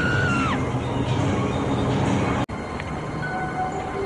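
Television-episode soundtrack of a car scene: a high screech that bends down and stops about half a second in, over a loud rumbling vehicle-like noise. An abrupt cut about two and a half seconds in gives way to music with short held notes.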